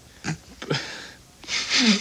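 A person's breathy vocal sounds: a few short puffs of breath in the first second, then a longer, hissing breath near the end that runs into speech.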